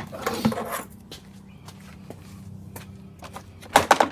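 Rustling handling noise in the first second, then a faint steady low hum with a few small clicks, and one sharp knock just before the end.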